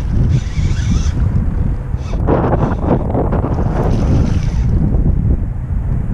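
Wind buffeting the microphone in a constant low rumble, with louder bursts of noise between about two and five seconds in.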